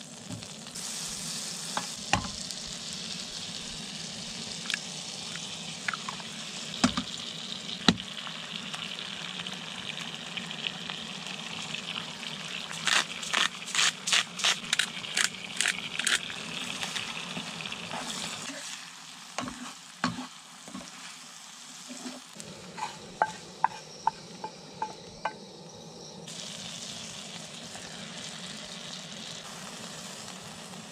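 Butter and eggs sizzling in a nonstick frying pan, with a few sharp taps of a wooden spatula against the pan. Past the middle comes a quick run of about ten shakes, about three a second, as seasoning is shaken over the eggs. The sizzle drops away for a few seconds and comes back near the end as bread toasts in the pan.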